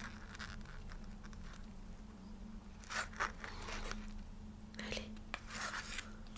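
Soft crinkling and rustling of a plastic pouch of collagen eye patches being handled as a patch is drawn out, in a few short bursts, the clearest about three and five seconds in, over a low steady hum.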